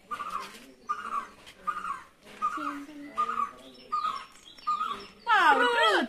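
A person's voice imitating an animal: short calls repeated about every three-quarters of a second, then a louder, falling wail near the end.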